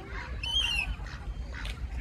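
A duck gives one short, high-pitched squawk about half a second in, over a steady low background rumble.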